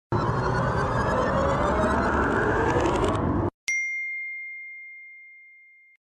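Logo-reveal sound effect: a loud steady rushing noise for about three and a half seconds that cuts off abruptly, followed by a single high bell-like ding that rings out and slowly fades.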